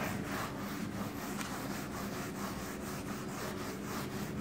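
Handwriting: short scratching strokes of a pen or chalk on a writing surface, a few a second at an uneven pace, over a steady low hum.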